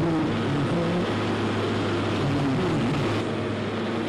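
Road roller's engine running, a steady low drone with a strong hum.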